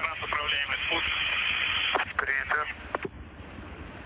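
A voice on the spacecraft radio loop, narrow and hissy like a radio channel, speaking for about three seconds; after that only the channel's steady hiss.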